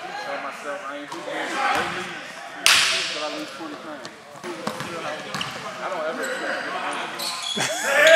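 Sounds of an indoor pickup basketball game: a basketball bouncing on the gym floor and players calling out, with one loud, sharp hit about three seconds in.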